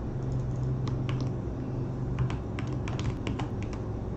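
Computer keyboard being typed on: a run of quick, irregular keystroke clicks, with a low steady hum underneath for the first half.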